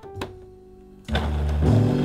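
A soft click, then about a second in a food processor starts blending a thick tofu mixture, under background music with sustained low notes.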